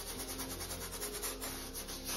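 A bristle paintbrush scrubbing acrylic paint onto a stretched canvas in rapid short strokes, a dry brushy rubbing as the paint is worked out into soft ripple rings.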